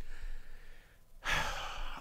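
A man breathing into a close microphone while pausing to think: a faint breath out, a short silent gap, then a louder breath in the second half, just before he speaks again.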